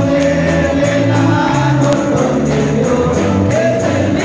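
Congregational hymn singing, a group of voices together over a steady electric bass line, with hands clapping along to the beat and jingling percussion.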